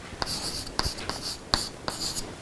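Chalk writing on a blackboard: about five short scratching strokes, each starting with a sharp tap as the chalk meets the board.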